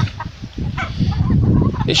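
Chickens clucking.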